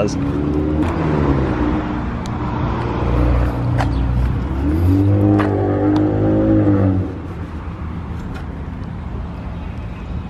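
A car engine running close by, its pitch drifting slowly up and down with light revving, stopping abruptly about seven seconds in.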